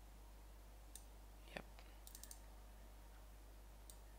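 Faint computer mouse clicks: one about a second in, a quick run of four a second later, and another near the end, over a low steady hum.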